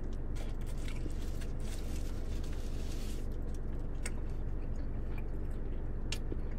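A man biting into a triple-patty pretzel-bun burger with fried onions and chewing it, with faint crunches scattered through, over a steady low hum.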